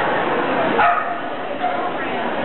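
A dog barking once, a short sharp call about a second in, over the murmur of people talking in the arena.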